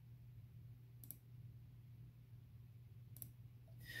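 Near silence: room tone with a steady low hum, broken by two faint clicks, one about a second in and one a little after three seconds.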